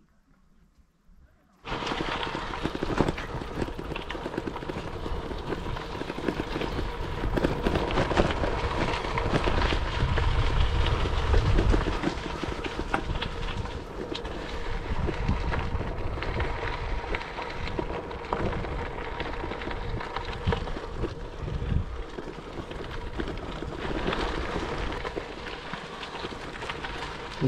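Wind rumbling on the microphone of a camera riding on a bicycle along a gravel road, with the hiss of tyres rolling on gravel. It starts suddenly after about a second and a half of near silence.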